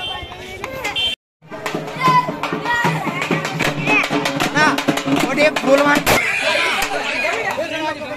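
Crowd voices, then, after a cut about a second in, a street procession's band playing: large hand cymbals clashing in a quick, dense beat, with many voices over it.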